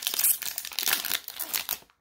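Foil-lined wrapper of a Topps 2020 Series One baseball card pack crinkling and tearing as it is ripped open by hand. The crackle dies away just before the end.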